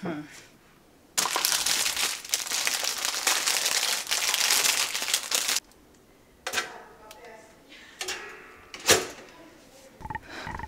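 Plastic bread bag crinkling and rustling for about four seconds as the bread is taken out, then lighter rustles and a single sharp click near the end.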